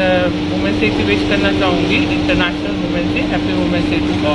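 A woman talking, with a steady low mechanical hum beneath her voice.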